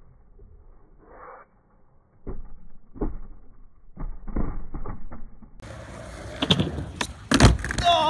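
Skateboard on a quarter-pipe ramp: wheels rolling and the board clacking and knocking against the ramp and pavement in a string of sharp hits, the loudest about seven and a half seconds in as the board comes down after a bail.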